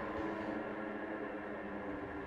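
A low, steady drone of several held tones, slowly fading, from the animated film's soundtrack.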